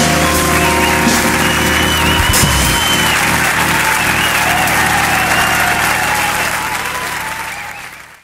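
A live band's final chord, with bass and keyboards, rings out and stops about two and a half seconds in, under audience applause; the applause and cheering carry on alone and fade out near the end.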